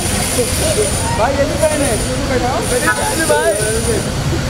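Several people's voices talking indistinctly over a steady low rumble, with a thin high whine that drops out and comes back.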